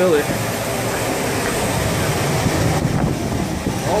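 Steady rushing rumble of air-handling and aircraft machinery in an airport jet bridge, growing slightly louder toward the aircraft door.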